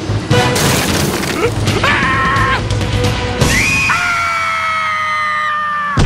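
Animated cartoon soundtrack: music with a sudden crash-and-shatter sound effect in the first second, then a short cartoon character's vocal and, from about halfway, a long held yell that sags slightly in pitch.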